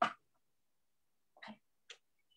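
Three short non-word vocal sounds from people on a video call, heard through the call's compressed audio: one at the start, one about a second and a half in, and one just before the end.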